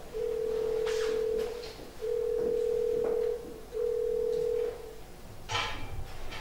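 A steady telephone-like electronic tone, one pitch held, sounding in three long beeps of about a second each with half-second gaps.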